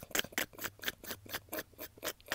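A person's quiet, breathy laughter: a quick run of short, sharp puffs of breath, several a second.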